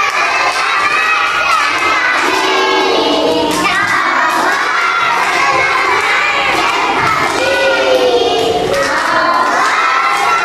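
A large group of young children shouting and singing together, many voices overlapping, with some hand clapping.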